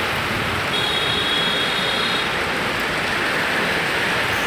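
Heavy rain falling steadily on a flooded street: a continuous, even hiss. A brief thin high-pitched tone sounds faintly about a second in.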